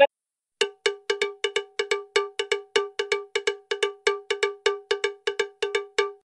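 Intro sound effect: a short, bell-like percussive note of one pitch, struck over and over about five times a second.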